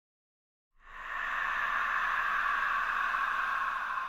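Silence, then a steady static hiss that fades in just under a second in and holds evenly.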